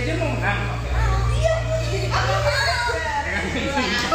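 Lively overlapping chatter of a group of adults and children talking at once, with a low rumble underneath for the first half or so.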